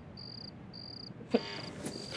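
Crickets chirping in short, even pulses, a little under two a second, with a soft click about two-thirds of the way through.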